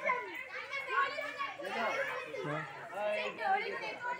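Indistinct chatter of several voices talking over one another, children's voices among them.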